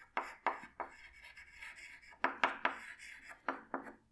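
Chalk writing on a chalkboard: a string of short, irregular taps and scrapes as words are written out.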